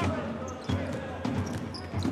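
Basketball being dribbled on a hardwood court, bouncing about twice a second, with arena crowd noise behind it.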